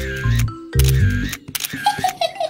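Cartoon camera shutter sound effect, clicking three times about 0.8 s apart, each click followed by a brief flash whine, over children's music with a bass line.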